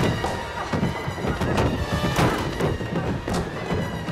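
Tense horror film score with steady held tones, under repeated thuds and bangs from a struggle on a wooden staircase.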